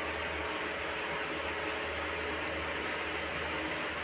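Steady hiss with a faint low hum and no distinct events: room tone.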